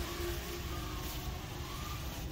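Loaded shopping cart rolling along a supermarket aisle: a steady low rumble from its wheels, with a faint wavering whine above it.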